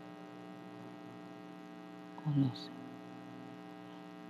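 Low, steady electrical hum with a stack of even tones, broken a little over two seconds in by a brief, short voice sound.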